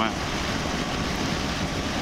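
Steady wind rush and road noise from a BMW R1200GS motorcycle being ridden at road speed, with a low drone beneath.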